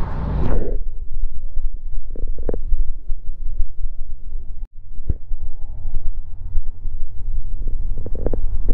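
Wind buffeting the microphone: a low, uneven rumble, with faint voices in the background.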